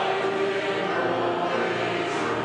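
Church congregation singing a hymn together, on long held notes.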